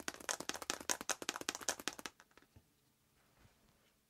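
A strong magnet knocking back and forth inside a plastic 35 mm film can wound with copper wire, as the can is shaken hard by hand in a quick run of sharp clicks. The shaking stops about two seconds in. Each stroke of the magnet through the coil induces a current that lights an LED.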